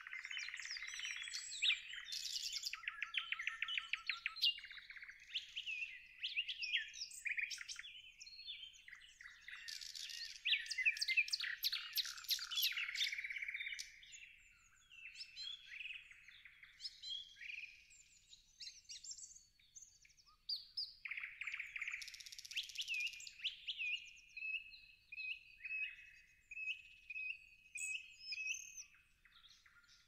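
Several songbirds singing and chirping together, with high-pitched overlapping phrases and trills. The chorus is busiest in the first half and thins to scattered, repeated short chirps later on.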